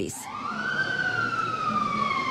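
A siren sounding one wail, rising in pitch for nearly a second and then falling slowly, over steady background noise.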